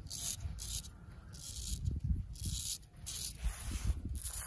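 Straight razor scraping stubble through shaving foam in quick short strokes, about two a second, each a brief crisp rasp.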